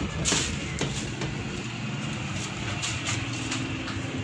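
Steady low engine rumble, with a few short knocks or clatters in the first second.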